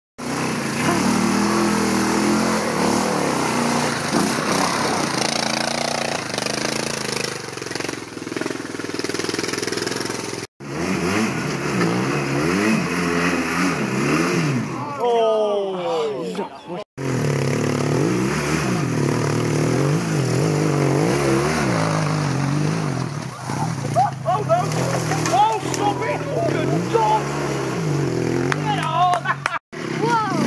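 Motorcycle-and-sidecar outfit's engine revving up and down repeatedly under load on a steep loose climb. The sound cuts off abruptly and picks up again three times.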